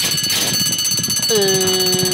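Electric starting-gate bell ringing loudly the instant the gates spring open to start a horse race, a rapid metallic ringing that cuts in suddenly. About halfway through, a long held pitched tone with overtones joins it.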